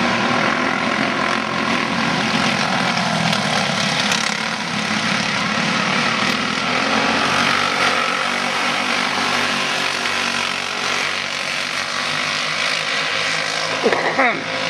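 A pack of sprint racing karts running flat out on a paved track, their small engines making a dense, steady, high-revving drone that swells as a kart passes close about eight seconds in.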